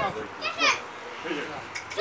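Raised voices calling "stop" over and over, some of them high-pitched like children's.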